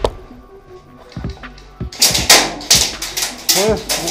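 Airsoft gunfire: a string of sharp cracks, about three a second, starting about halfway through, over faint background music.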